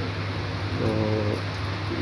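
Steady low hum of room background noise, with one drawn-out spoken syllable from a man about halfway through.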